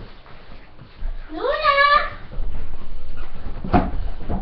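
A dog gives one short howl that rises in pitch and then holds, about a second in. A sharp knock follows near the end.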